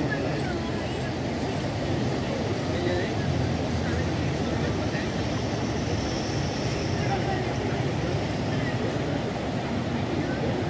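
River in flood running fast and churning, a steady low-pitched rushing noise of swollen water.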